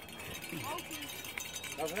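Faint, distant voices over outdoor background noise, then a nearby voice starting to speak near the end.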